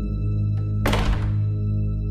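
An interior door at the top of a staircase slams shut once, about a second in: a single sharp bang with a brief ring-out, over a sustained droning music note.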